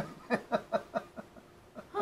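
A person laughing: a quick run of about six short laughs that trail off after about a second and a half.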